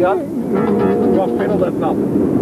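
Music playing from a car radio, heard inside the car, with held notes and a voice over it at the very start.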